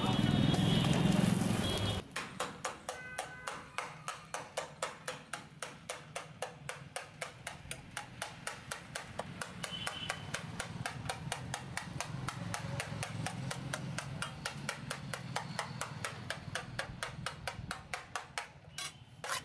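Steel ladle stirring and tossing noodles in a metal wok, striking the pan in a quick, steady rhythm of about four clinks a second over a low hum. The clinking begins about two seconds in, after a louder stretch of low background noise.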